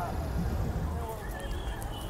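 Busy city street at night: a steady low rumble of passing traffic, with faint distant voices.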